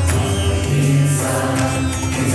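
Mixed church choir singing a Malayalam Christian song set in Mayamalavagowla raga, holding sustained notes over instrumental accompaniment with a steady bass line. Short percussion strikes come near the start and near the end.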